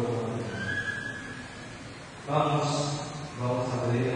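A man's voice in the church holding long, steady notes, as in chanting or intoning. One phrase ends about half a second in, and another begins a little over two seconds in.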